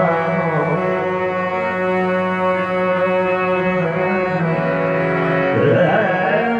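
Ghazal performance: a harmonium sustains held notes while a male singer draws out long gliding vocal phrases, with a rising vocal glide near the end.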